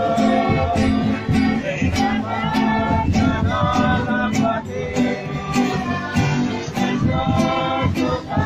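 A group of male voices singing a religious song in Q'eqchi' to several strummed acoustic guitars, with a steady strumming rhythm.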